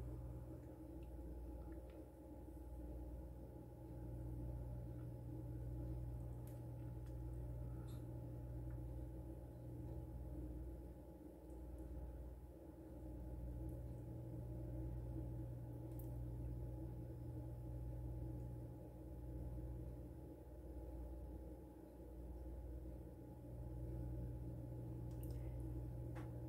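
Quiet room with a steady low hum, gently pulsing in level, and a few faint ticks; the pouring of the melted soap is barely heard, if at all.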